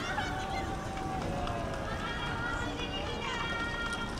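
Several voices calling out, overlapping and unintelligible, some held as long calls, over a steady low rumble of wind on the microphone.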